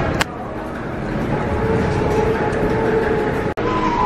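Loud New York subway noise on the platform: a train's steady rumble and rail noise, with a held squeal in the middle. There is a sharp click just after the start, and the sound drops out for an instant near the end.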